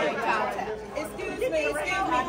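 Several people talking over one another, mostly women's voices, in lively group chatter.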